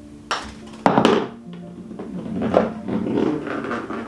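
A putter striking a golf ball on an artificial-turf putting mat: two sharp knocks about half a second apart within the first second, then a few softer taps. Background music with sustained notes plays throughout.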